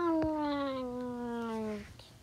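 A cat's long meow that rises briefly, then slides slowly down in pitch for nearly two seconds before stopping, with a short click just after it begins.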